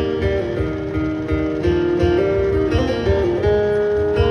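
Live instrumental break of a folk-country song: acoustic guitar strummed in an even rhythm, with a held melody line stepping from note to note over it and no singing.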